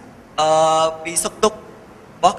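A man speaking into a microphone. He holds one drawn-out syllable at a steady pitch for about half a second, then says a couple of short syllables.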